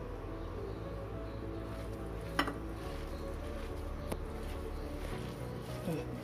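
Steady low hum under quiet hand-mixing of vada batter in a ceramic bowl. One sharp clink of a steel tumbler against the plate comes about two and a half seconds in, and a fainter one comes near four seconds.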